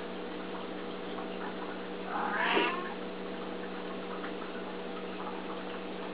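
Tabby house cat giving a single short meow, asking for food, about two seconds in, over a steady low background hum.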